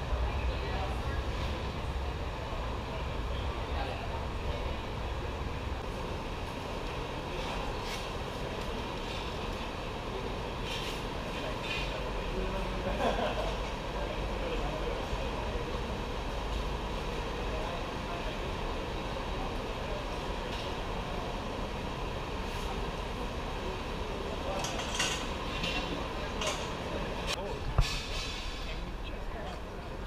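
Busy pit-garage ambience: a steady low rumble and hubbub with people talking in the background. A few sharp clicks and knocks from tools and equipment come near the end.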